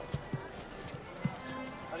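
Horse hooves stepping slowly, a few dull, irregularly spaced thuds, over quiet background music.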